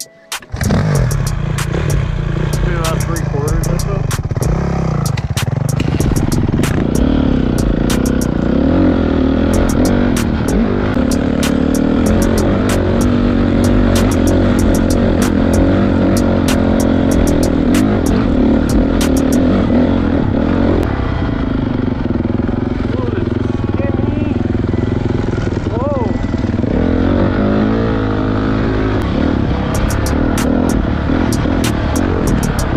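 Single-cylinder four-stroke engine of a Honda CRF450 dirt bike running under throttle as it climbs a loose dirt trail, its revs rising and falling. It cuts in abruptly about half a second in after a brief drop-out, and many sharp clicks are scattered through it.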